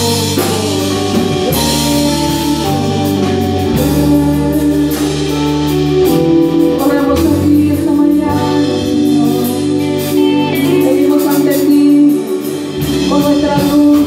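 Live worship band playing a Spanish-language song, with a drum kit and electric guitars under a lead vocal.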